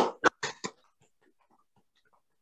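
A few hand claps picked up by one participant's microphone on a video call, about five quick claps in the first second, then faint small clicks.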